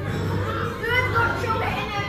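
Children's voices chattering together, a babble of young talk with no one voice standing out.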